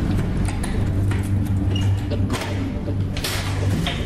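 Low, tense background music with a steady drone, under several metallic clanks and rattles of a barred jail-cell door being unlocked and pulled open.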